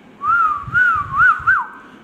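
Whistling: a short phrase of four rising-and-falling notes, the last note held briefly before it stops.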